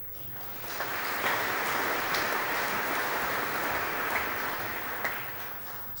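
Audience in a large hall applauding. The clapping swells in about half a second in, holds steady, and fades just before the end.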